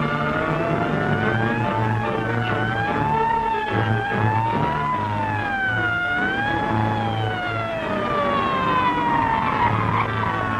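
Sirens wailing, rising and falling in pitch, over background music from an old film soundtrack. Near the end one siren winds down in a long falling glide.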